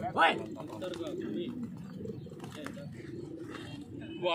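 Racing pigeons cooing under a background murmur of people's voices, with a brief rising call just after the start.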